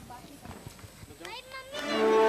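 Faint, indistinct chatter of small children's voices, one voice rising sharply in pitch just past halfway. Music starts loudly near the end.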